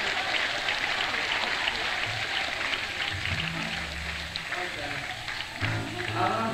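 Theatre audience applause, a dense patter of clapping that thins out over the first few seconds. A few low sustained instrument notes sound around the middle as the band readies the next song. Heard on an audience cassette recording.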